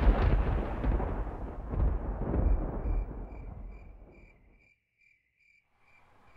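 A deep rumbling boom dies away over about four and a half seconds. A cricket chirps steadily, about twice a second, through the tail of the boom and on into the quiet.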